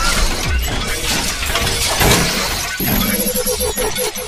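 Animated logo intro sting: dense crashing, shattering sound effects with several low hits, laid over music, and a pulsing tone coming in near the end.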